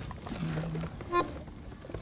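Button accordion sounding two short, quiet trial notes: a low held note about half a second in, then a brief higher note just after a second.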